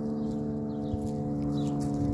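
Wind chimes ringing, several steady tones at different pitches sounding together.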